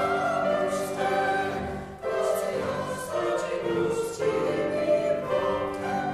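Small mixed choir of men's and women's voices singing together in a church, with a brief breath between phrases about two seconds in.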